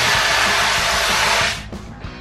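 Fire extinguishers discharging: a loud, steady hiss that cuts off suddenly about one and a half seconds in.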